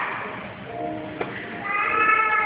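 A film's soundtrack playing through cinema speakers, picked up by a phone: a short held tone about halfway through, a sharp click just after a second, then several steady high tones setting in together near the end.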